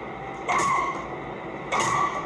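A woman striking a man with a crowbar: two sudden loud hits about a second apart, each followed by a short high-pitched cry.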